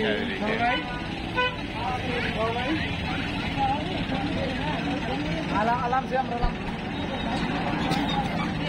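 Road traffic with a short vehicle horn toot about a second and a half in, under people's voices.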